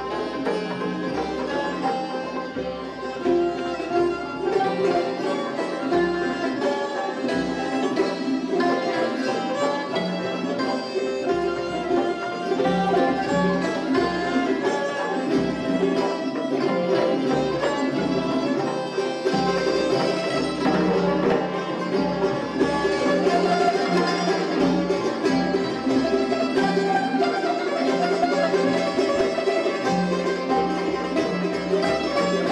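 Live Persian classical ensemble playing in dastgah Chahargah: bowed kamancheh, hammered santur and plucked tar with ney and hand-drum accompaniment.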